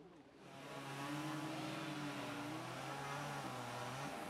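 A heavy motor vehicle's engine running with a steady low hum under a wash of noise, coming up about half a second in and easing near the end.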